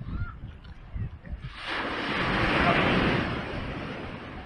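A wave breaking on the beach. Its rushing wash swells from about a second and a half in, then fades over roughly two seconds.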